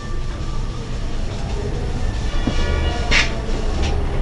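Whiteboard being wiped with a duster, a brief rubbing swish about three seconds in, over a steady low rumble. A high whistling tone joins the rumble about two seconds in.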